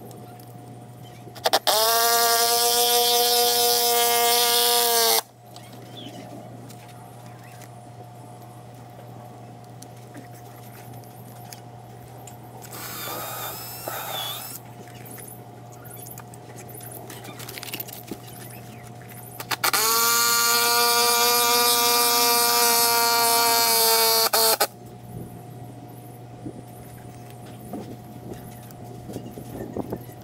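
Power drill boring into a wooden deck ledger board in two runs, about three and a half seconds and then about five seconds, each a steady motor whine that drops slightly in pitch as the trigger is let go.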